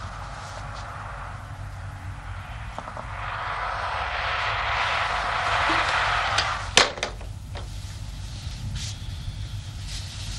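A hiss swells for a few seconds and is cut off by a sharp, loud click, the telephone handset being put down on its cradle, followed by a few fainter clicks over a low steady hum.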